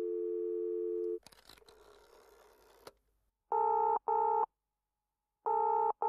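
Telephone call tones: a steady two-note dial tone that cuts off about a second in, a faint line crackle, then the ringing tone a caller hears, coming as two short rings in quick succession and repeating about two seconds later.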